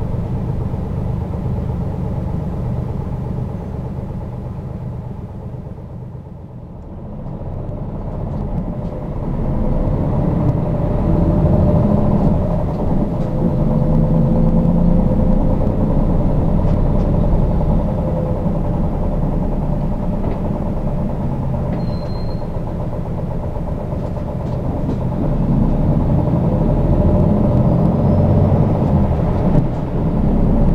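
City bus engine and road noise heard from inside the cabin. It quietens about six seconds in, then builds again as the bus picks up speed, and runs on steadily with a thin whine. A short high beep sounds near the end.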